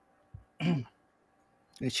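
A man clears his throat once, briefly, about half a second in, over a near-silent call line. A voice starts speaking again near the end.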